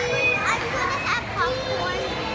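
Young children's high-pitched voices, calling out and chattering in short rising and falling cries.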